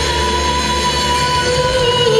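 Live music: a female singer with keyboard accompaniment, long notes held steady.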